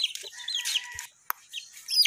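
One-month-old gamefowl chicks peeping, a few short high chirps in the first second, then quieter, with a single sharp click about a second and a half in.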